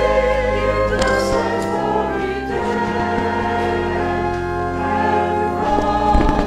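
Church choir singing in slow, held chords that change about once a second, over low sustained bass notes.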